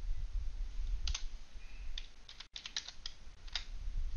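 Computer keyboard keys clicking as a dimension value is typed in: about half a dozen separate keystrokes from about a second in, over a low background rumble.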